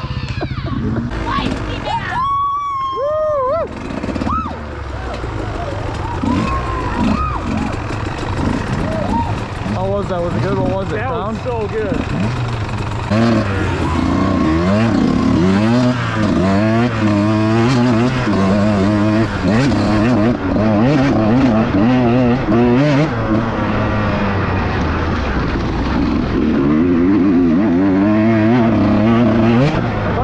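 Two-stroke dirt bike engines idling, then, about halfway through, the rider's own bike revs hard and repeatedly up and down as it is ridden along a woodland trail, the engine pitch rising and falling with throttle and gear changes.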